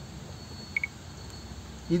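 Pause in speech filled by steady open-air background noise, with two quick high chirps close together a little under a second in.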